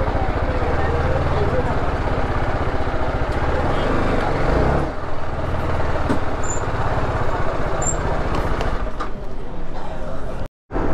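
Motorcycle engine running at low speed, its low, rapid firing pulse close to the microphone, with people's chatter around it.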